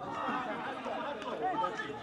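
Several voices shouting and calling over one another at once: players' and onlookers' calls during open play in a football match.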